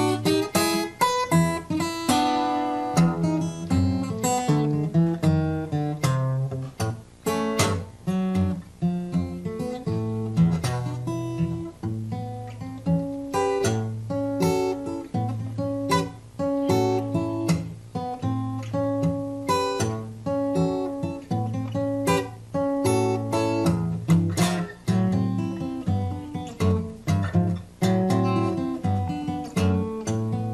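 Solo acoustic steel-string guitar played fingerstyle: picked melody notes over a steady, repeating bass line.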